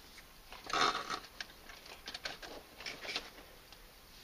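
A USB-C power cable being handled, unplugged and plugged into a 100-watt power delivery charger: a brief rustle about a second in, then a few light plastic clicks and taps.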